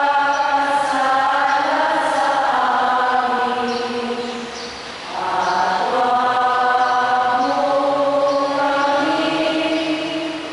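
Liturgical chant sung at Mass, slow and in long held notes. Two phrases, with a short dip between them about five seconds in.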